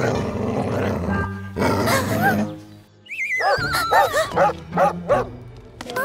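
Cartoon dog barking over background music: a couple of barks about two seconds in, then a quick run of about six barks in the second half, with a falling, wavering high note just before the run.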